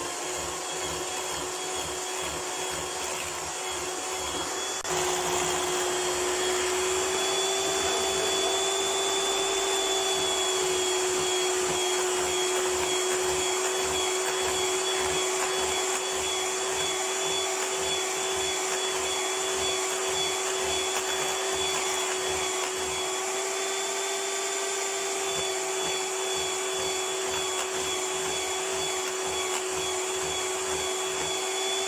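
Electric hand mixer running steadily, its beaters creaming butter and sugar for a cake in a glass bowl. About five seconds in it gets louder and its tone steps up slightly, then holds steady.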